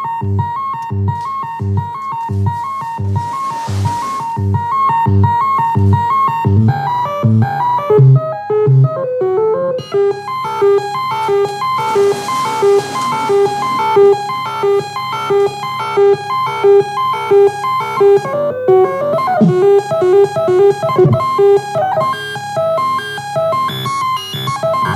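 Error Instruments handheld glitch synthesizer playing a looped, glitchy electronic pattern: low pulses about twice a second under repeating high blips, changing partway through to a repeating two-note figure with short pitch sweeps.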